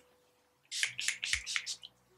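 Makeup setting spray pumped onto the face: a quick run of short hissing sprays, several in little more than a second, starting a little before the middle.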